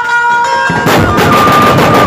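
Dhumal band music: a held melodic line with the drums briefly dropped out, then, just under a second in, the band's large double-headed drums crash back in with dense, loud beating.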